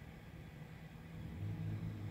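Low steady engine rumble that swells louder in the second half.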